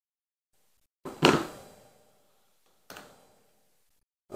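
Hobby sprue cutters snipping a plastic model part free of its sprue: one sharp snip about a second in, then a much fainter click near three seconds.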